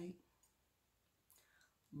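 Near silence between spoken words, with a couple of faint short clicks, one about half a second in and one about a second and a half in.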